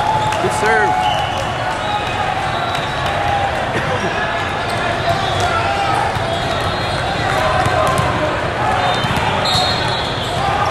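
Loud, steady din of a crowded sports hall: many overlapping voices and shouts, with repeated short thumps of volleyballs being hit and bouncing on the courts.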